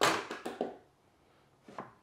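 A wooden board knocking against a plywood jointing sled on a table saw, with a sharp knock and a short clatter at the start and a smaller knock about half a second later. After that it goes almost quiet, apart from a faint click near the end.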